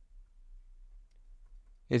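A quiet pause in speech with only a faint low hum and a few faint ticks. A man's voice starts speaking just before the end.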